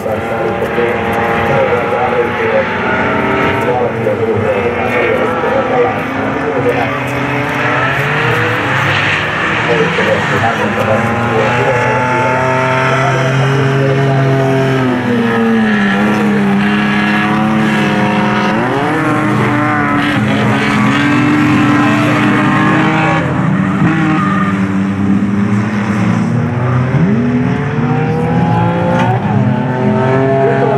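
Several folkrace cars' engines revving hard as they race round the track together, many engine pitches overlapping and rising and falling through gear changes and corners.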